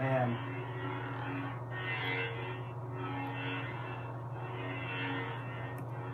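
Custom lightsaber's Verso sound board playing its steady blade hum through the hilt speaker, with smoothswing swells rising and fading about once a second as the blade is moved. A brief louder falling sound comes right at the start.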